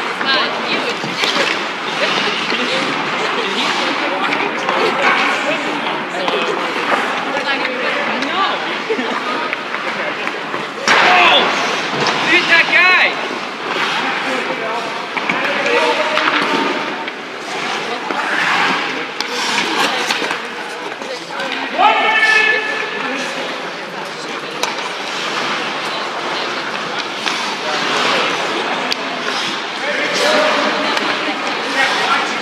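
Indistinct voices and chatter echoing around an indoor ice rink, with a couple of louder calls partway through, over the scrape of skates and knocks of sticks and pucks on the ice.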